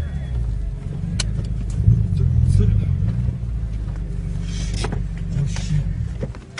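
Low steady rumble of a car's engine heard from inside its cabin, with a few sharp clicks and a short hiss near the end.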